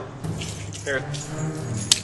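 Car keys jangling briefly as they are handed over, ending in one sharp clink near the end.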